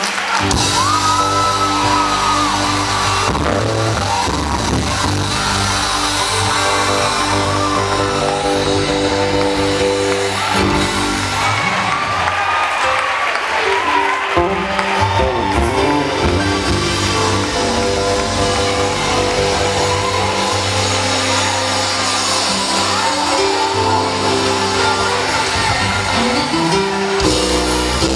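A live band (drums, bass and electric guitar) plays on at the end of a song, with whoops and shouts from a crowd in a large hall.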